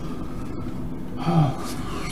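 A man's short murmur followed by a quick breathy exhale, a sigh-like breath, over a steady low background hum.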